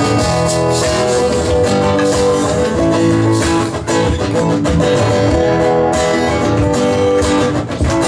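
Two acoustic guitars strumming an instrumental passage of a live acoustic band performance.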